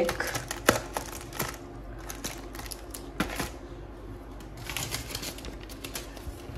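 Thin clear plastic food packaging handled on a countertop: irregular sharp clicks and crackles as a plastic tub is pressed and moved, with a short rustle about five seconds in.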